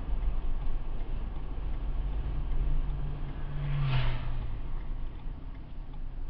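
Car driving on a town road, heard from inside the cabin: a steady low rumble of road and engine noise. A low engine hum sinks slightly and fades out at about four and a half seconds, as the car slows towards traffic ahead. A brief hiss comes about four seconds in.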